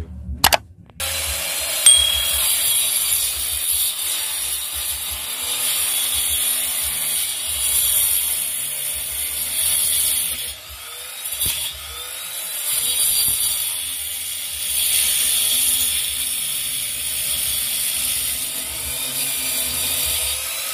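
Handheld angle grinder with a diamond cutting disc starting up about a second in and cutting a groove into a brick wall. It makes a steady, high grinding noise that dips in loudness now and then as the disc bites and eases off.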